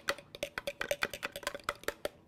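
Vinaigrette being whisked in a plastic container: a utensil clicks quickly and evenly against the sides, about seven or eight strokes a second.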